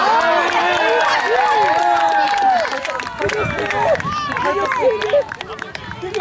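Spectators cheering and shouting, several voices at once, loudest in the first couple of seconds, with scattered sharp claps among them.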